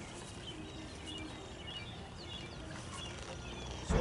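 Faint bird chirps, a few short calls in the middle stretch, over a low steady outdoor background noise.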